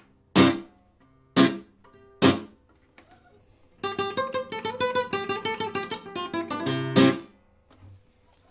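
Nylon-string flamenco guitar: three single strummed chords, each stopped short with the palm (apagado), then a quicker run of strokes from about halfway that ends in one loud chord cut off quickly.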